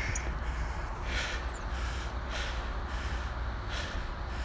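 A person breathing hard while lunging up stairs, with short sharp breaths about once a second over a steady low rumble.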